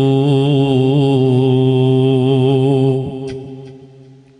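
A man's voice holding one long chanted note with a slight waver for about three seconds, then fading away in echo, with a couple of faint clicks as it dies out.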